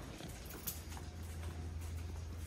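Faint footsteps of a dog and a child walking on a hard floor: light clicks and taps of claws and sandals, over a steady low hum.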